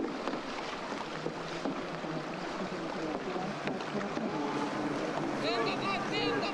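Steady outdoor hiss with indistinct voices rising through it, and one voice calling out more clearly near the end.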